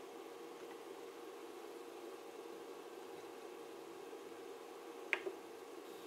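Faint steady hum of bench electronics with a constant tone, broken about five seconds in by a sharp click and a smaller one just after.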